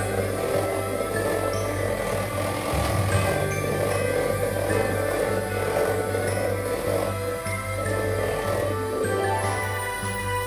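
Background music with light bell-like jingles, over the steady whir of an electric hand mixer beating batter in a stainless steel bowl.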